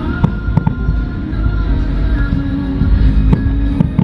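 Aerial firework shells bursting in a dense barrage, a low rumble of booms with several sharp bangs, over music playing for the show.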